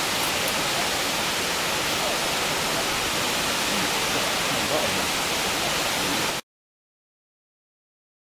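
Mountain waterfall pouring down a rock face onto boulders: a steady rushing hiss that cuts off abruptly to silence about six seconds in.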